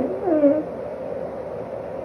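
A sleeping calico cat making a short fart-like sleep noise at the start, a squeaky pitched sound in two parts that falls in pitch and is over in about half a second. A steady faint hum runs underneath.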